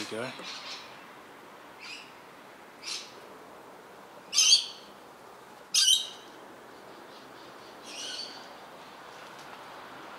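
A bird calling outdoors: about five short, high calls a second or two apart, the loudest two about four and a half and six seconds in.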